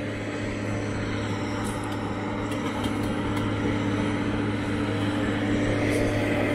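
Engine of a tracked drainage-tile plow running steadily while the machine pulls the plow boot through the soil, a constant drone that grows gradually louder.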